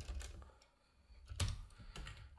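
A few quiet clicks and taps of a computer keyboard and mouse, the plainest about one and a half seconds in.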